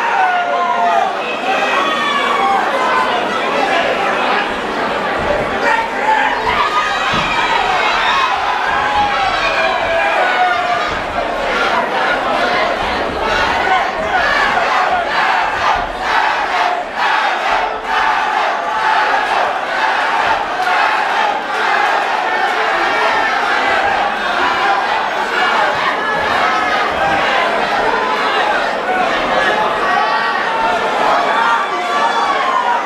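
Boxing crowd in a large hall shouting and cheering on the fighters, many voices at once, with short sharp knocks scattered through the middle.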